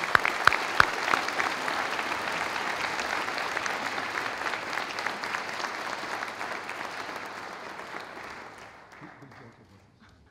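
Audience applauding: a few sharp claps stand out at first, then steady applause that fades away over the last few seconds.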